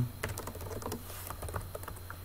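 Computer keyboard typing: a string of quick, uneven key clicks.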